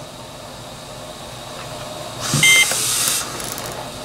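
Trilogy 100 ventilator giving a short beep as its detachable battery is pulled out, signalling that the battery is disconnected. The beep comes over about a second of hissing air that starts a little past halfway.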